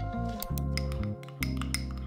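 A metal spoon clinking against a small ceramic ramekin as a sauce is mixed: a string of short, irregular clinks over steady background music.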